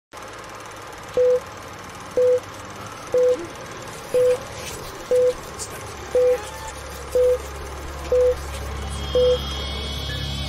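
Film countdown leader beeps: a short, steady mid-pitched beep once a second, nine in all, each marking a number of the countdown, over a steady hiss. A low hum joins about six seconds in.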